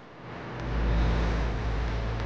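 A steady low rumble with a faint low hum and hiss, swelling up within the first half second and then holding.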